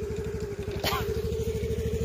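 Motorcycle engine idling, a steady low even throb with a constant hum over it.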